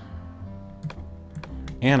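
Steady background music with a few short computer clicks about a second in; a man's voice starts just before the end.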